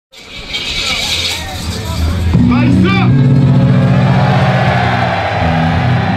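Live hip hop show: a crowd cheering and shouting, then about two seconds in a deep, sustained bass-heavy track from the PA comes in under the noise of the crowd.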